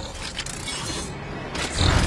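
Film sound effects of giant robots' moving parts: mechanical whirring and metallic creaking and clanking, with a deep low hit swelling near the end, under a film score.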